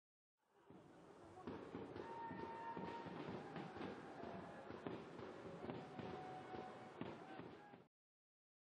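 Faint ambient sound from a football match: a low wash of crowd and voices with scattered thuds such as ball kicks. It fades in over the first second and cuts off abruptly near the end.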